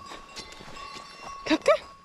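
Faint, steady ringing of a cowbell, with light rustling in the grass. A short spoken word cuts in near the end.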